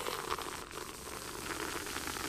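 Water boiling and sizzling on the very hot glass of a lit tungsten halogen reflector bulb as it is poured in. The hiss starts suddenly and then runs on steadily.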